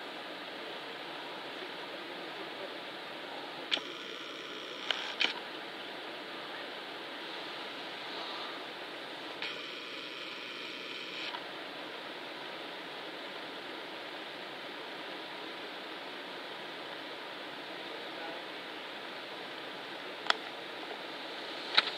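Steady background hiss with a few sharp clicks about four to five seconds in, and two short stretches of a faint whirring tone, one around four seconds in and one around ten seconds in.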